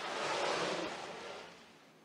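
Ocean wave breaking, a sound effect: a rush of noise that starts suddenly, swells for about half a second and fades away over the next second.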